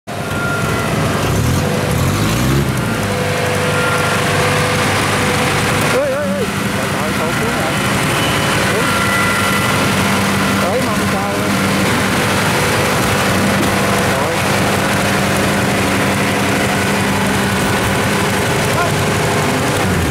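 Kubota DC-105X combine harvester's diesel engine running steadily at close range, a loud continuous mechanical din with a steady hum, while the machine sits bogged in mud.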